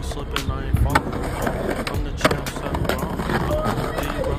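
Skateboard wheels rolling over stone paving, with several sharp clacks of the board against the ground, the loudest a little over two seconds in.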